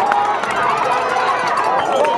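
Spectators at a football game shouting and cheering during a play, many voices overlapping, with a few sharp claps.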